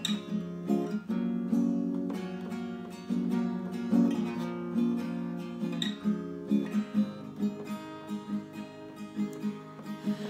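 Acoustic guitar playing a song's intro: full strummed chords, giving way in the second half to lighter, evenly spaced strokes about twice a second.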